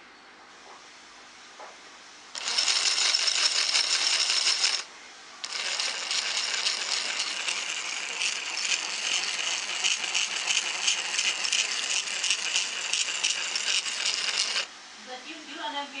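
Small model-locomotive chassis running under its electric motor, brass spur gears and LGB wheels spinning, with a loud buzzing rattle. It runs about two seconds, drops off for half a second, then runs about nine seconds more before cutting off.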